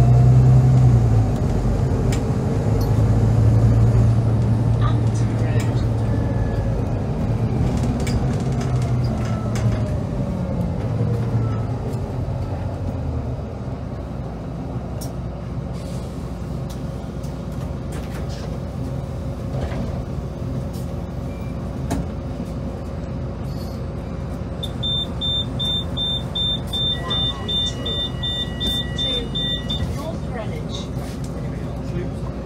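Volvo B9TL double-decker bus's six-cylinder diesel engine heard from inside the lower deck, pulling hard under full throttle through gear changes for the first dozen seconds, then easing off as the bus slows. A rapid high-pitched beeping starts near the end.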